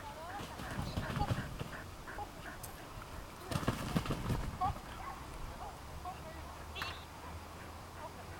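Agility dog running through fabric tunnels, making two spells of dull, uneven thumping, the louder one about three and a half seconds in. Short distant calls of the handler directing the dog are heard throughout.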